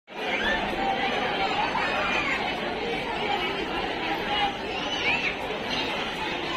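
Crowd chatter: many people talking at once in a dense, steady babble, with a few single voices standing out now and then.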